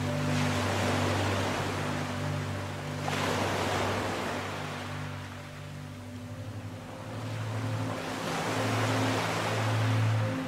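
Ocean surf washing in swells, three of them, each rising and falling back, over soft sustained ambient music chords.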